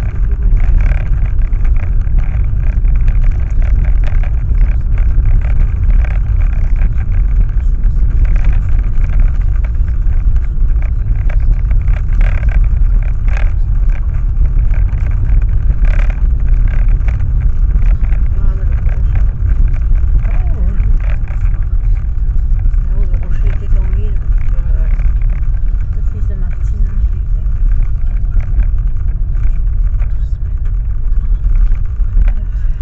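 Car driving slowly on a rough, patched lane, heard from inside the cabin: a loud, steady low rumble of tyres and engine, with frequent short knocks and jolts from the uneven surface.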